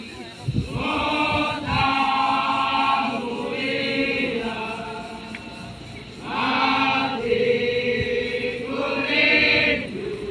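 A crowd of voices chanting together in long held phrases, each lasting one to a few seconds, with short lulls between them.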